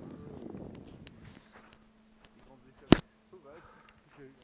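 A single sharp knock, short and much louder than anything else, about three seconds in, after a stretch of indistinct talking.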